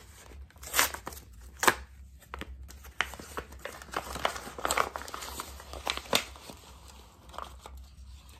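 Cardboard blind-box toy packaging being torn open by hand, a run of crinkling and tearing with sharp snaps of the card, the loudest about one and two seconds in.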